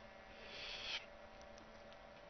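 Quiet room tone with a faint steady hum, and a short soft hiss about half a second in that swells and then cuts off suddenly.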